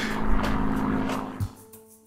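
Propeller aircraft flying overhead, a steady engine tone over rushing noise, cut off about one and a half seconds in. Soft music with sustained keyboard notes takes over near the end.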